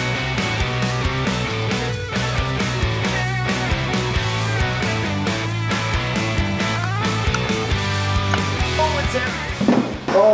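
Background music with a steady beat that cuts out near the end.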